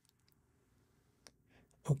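Computer mouse clicking as a web page is scrolled: a few faint clicks, then one sharper single click just past halfway, in an otherwise very quiet stretch.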